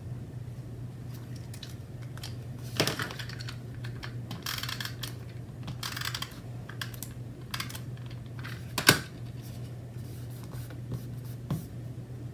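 Desk crafting sounds: a pen scratching on paper, then a tape runner rasping across paper in short strokes around the middle, with scattered sharp plastic clicks, the loudest about nine seconds in. A low steady hum runs underneath.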